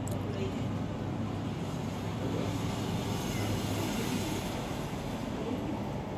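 Distant road traffic heard from high above the street: a steady low hum with a wash of passing vehicles that swells in the middle.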